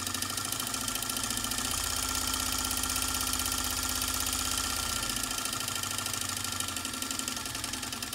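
Small electric motor driving the excitation of a model shake-table frame, running steadily with a fast, even mechanical buzz. A deeper hum swells in about two seconds in and drops away around five seconds.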